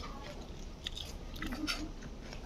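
A person chewing food with her mouth close to the microphone, with a few short, soft mouth clicks scattered through the chewing.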